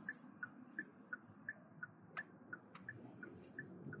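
A car's turn-signal indicator ticking at about three ticks a second, alternating tick and tock, as the car signals a left turn. It sounds faint inside the cabin over low road noise, with one sharper click about two seconds in.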